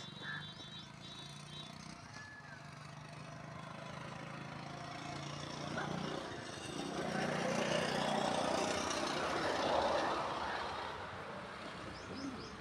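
A motor vehicle's engine, a steady low hum that grows louder over several seconds to a peak about ten seconds in, then fades.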